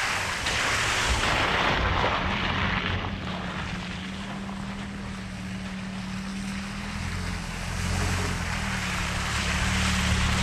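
SUVs driving slowly along a muddy trail, engines running at low speed and tyres splashing through puddles. A Honda Passport passes close in the first few seconds with a loud splash and tyre noise, and the next vehicle comes up louder near the end.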